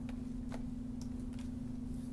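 Steady low electrical hum with a few faint computer-mouse clicks as windows are dragged about the screen.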